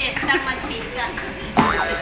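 People talking and laughing. About one and a half seconds in comes a loud, sudden sound with a sliding pitch.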